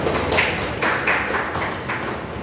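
A few scattered hand claps, about four, irregularly spaced, over a steady low room background.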